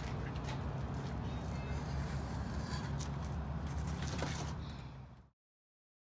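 Light clicks and scrapes of hand work on a bicycle's rear wheel axle, over a steady low hum; the sound fades and cuts off about five seconds in.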